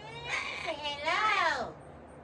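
A pet parrot calling in a high, speech-like voice: a few short calls, then a longer one that rises and falls in pitch and ends about a second and a half in.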